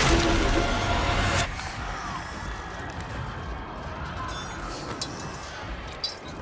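Soundtrack of an animated scene: a loud crash-like burst over dramatic music at the start, which cuts off sharply about a second and a half in, leaving a quieter low rumbling ambience.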